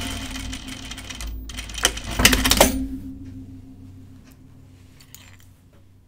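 Juki sewing machine running as it stitches a seam in light rayon, then stopping about three seconds in; faint small handling clicks follow.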